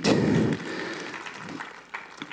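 A small congregation clapping, the applause loudest at first and dying away over about two seconds.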